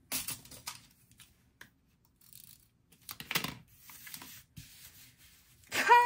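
Paper rustling and scraping as a sticker is pressed and smoothed onto a planner page by hand, in two short bursts about three seconds apart with faint light taps between.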